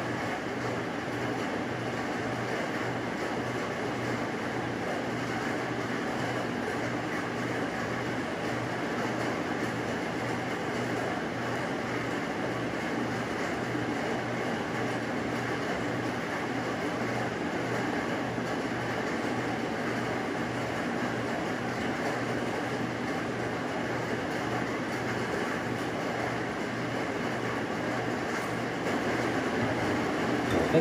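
Steady machine hum and whir with a low, evenly pulsing drone, unchanging throughout.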